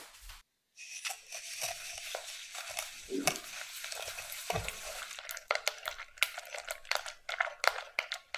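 Wire balloon whisk stirring egg whites and granulated sugar in a glass bowl, to dissolve the sugar. It makes a steady scraping swish from about a second in, and its wires click against the glass more and more often from about five seconds in.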